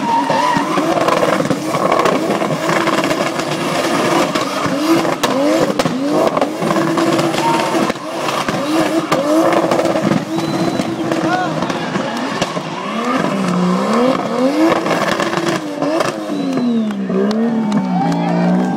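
Toyota 2JZ inline-six in a Chevy Camaro being revved hard up and down while the car drifts, its tyres squealing and skidding on asphalt. The engine pitch rises and falls again and again, with deeper, wider sweeps near the end.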